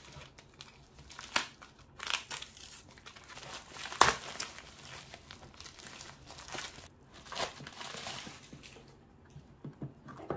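Plastic bubble-mailer packaging crinkling and rustling as it is opened by hand. The crackles come irregularly, with a few sharper, louder ones; the loudest is about four seconds in.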